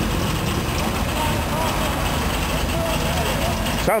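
Engine of a 1966 police car running steadily as the car rolls slowly past; it sounds like it is running pretty good.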